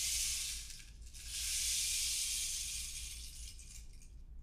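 Two swells of soft, high hiss from a shaken or rolled hand-percussion instrument: a short one at the start, then a longer one that fades near the end. No bowl is ringing.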